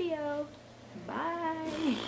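A woman's voice making two drawn-out wordless sounds: a short one falling in pitch, then a longer held one about a second in.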